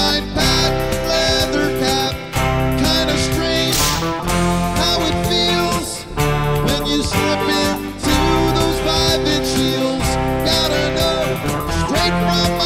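Instrumental passage of a rock song, a band with guitar to the fore and no vocals.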